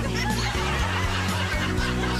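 Upbeat background music with a steady bass line under canned audience laughter from a laugh track.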